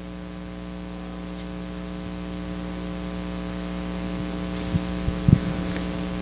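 Steady electrical mains hum in the microphone and sound system, a low hum with a stack of even overtones, with a couple of faint soft knocks near the end.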